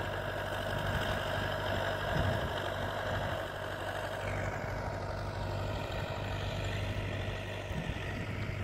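T-40AP tractor's air-cooled diesel engine running steadily under load as it pulls a rail drag across a ploughed field, working a little hard on the uphill stretch. It grows slightly fainter about halfway through as the tractor moves off.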